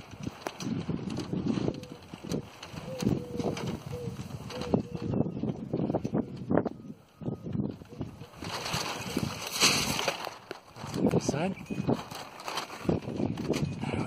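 Tyvek sail rustling and crackling as a homemade steel-tube land-yacht trike rolls slowly, with irregular knocks and rattles from the frame and a run of short squeaks in the first few seconds. A gust of wind hisses on the microphone about nine seconds in.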